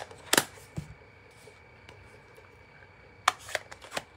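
Hard plastic clicks and taps from handling a stamp and a plastic-cased ink pad while stamping onto a paper envelope flap: a sharp click soon after the start, a lighter one under a second in, then three lighter clicks near the end.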